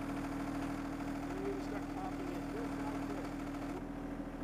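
John Deere 1025R compact tractor's three-cylinder diesel engine running with a steady, unchanging hum.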